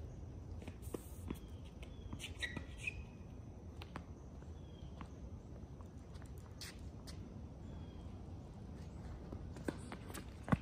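Quiet outdoor ambience on a tennis court between points: a faint low rumble with scattered light ticks and taps, and a few short high bird chirps.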